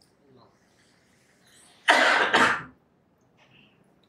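A man coughs twice in quick succession about two seconds in, close to the microphone.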